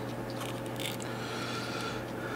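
Faint rustling and small clicks of fingers handling a thin electronics lead and its connector, over a steady low hum.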